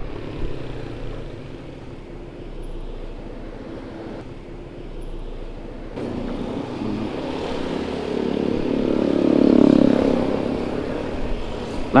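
A Yamaha NMAX scooter riding along a road, with steady engine, tyre and wind noise. From about seven seconds in, a vehicle's engine grows louder, peaks around nine to ten seconds and fades.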